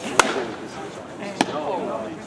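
A softball bat cracks against a pitched ball about one and a half seconds in. A louder sharp crack comes a little over a second before it. People talk in the background throughout.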